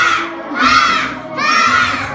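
A group of young children shouting in unison, three short, loud shouts about a second apart, each timed with a punch in a kung fu exercise routine, over backing music.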